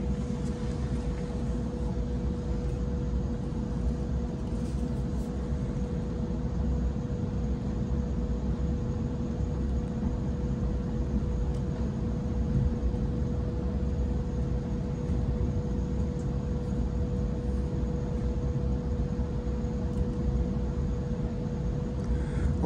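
Cabin sound of a Waratah A-set double-deck electric train under way: a steady running rumble with a constant hum held at one pitch.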